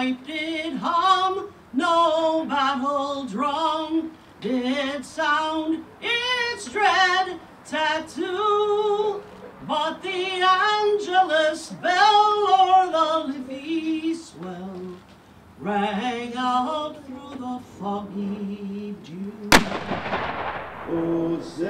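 A woman singing a slow unaccompanied song, phrases held with vibrato and short breaths between. Near the end a single blank shot from a muzzle-loading field cannon, sharp, with a long echo dying away.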